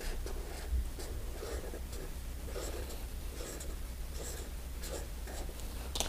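Felt-tip marker scratching across paper in short repeated strokes, colouring in a drawing.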